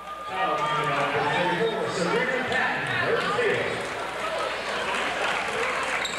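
Basketball crowd in a gymnasium: many spectators shouting and cheering at once in a steady, mixed din of voices.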